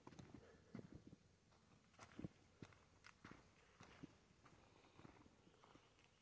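Near silence with faint, irregular footsteps of a person walking.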